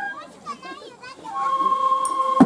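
Children's voices chattering and calling out in a break in the festival flute music, then a steady transverse bamboo flute (shinobue) tone comes back in about one and a half seconds in.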